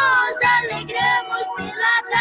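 A Portuguese gospel birthday praise song playing: a singer's voice over instrumental backing with a steady beat.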